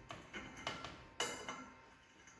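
Hand deburring tool twisted around a drilled hole in steel tubing: faint scraping with a few small clicks, the sharpest about a second in.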